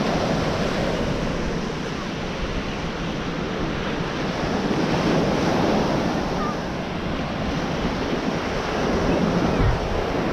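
Surf breaking and washing up onto a sandy beach, swelling and easing as each wave comes in, with wind rumbling on the microphone.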